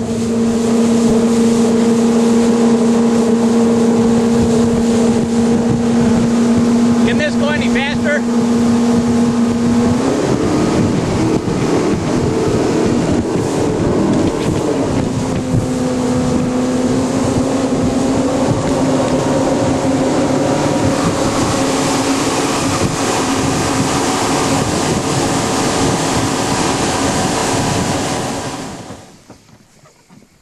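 Johnson 120 HP outboard motor on a 19-foot deck boat running at a steady cruising speed, with loud wind and water rush over the hull. About a third of the way in the engine pitch shifts, then holds steady again at a slightly higher note. The sound drops away just before the end.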